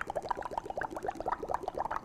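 Hydrogen gas bubbling out of a tube into a glass bowl of soapy water, building up foam. It is a fast, steady stream of small bubbling blips.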